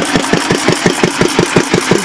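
1920s 4 HP Cushman binder engine running slow, with a rapid, even beat of firing and mechanical knocks.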